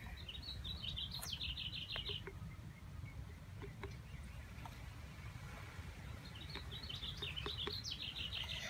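A songbird singing two fast runs of high, quickly repeated notes, one near the start and one near the end, with a few faint clicks in between.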